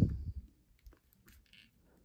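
A few faint, short clicks from a plastic action figure's leg joints being bent by hand, with light handling.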